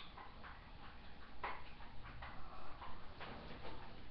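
Small, irregular clicks and taps from makeup being handled and applied, about a dozen spread across the few seconds.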